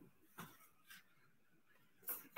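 Near silence: room tone, with one faint, brief sound about half a second in.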